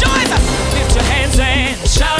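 Music: an upbeat gospel song from a church music ministry, with drums, a sustained bass note and a wavering lead voice over the band.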